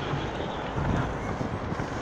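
Wind buffeting the microphone: an uneven rumbling hiss that swells briefly about a second in.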